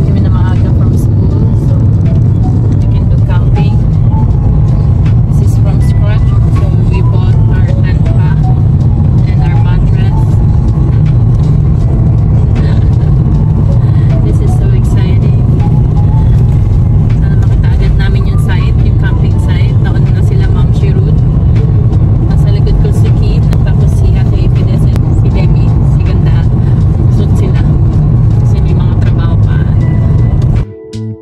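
Steady low rumble of road and engine noise inside a moving car's cabin, with a voice faintly heard over it.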